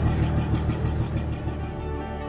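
Boat engine idling: a steady low rumble with an even throb. Music fades in near the end.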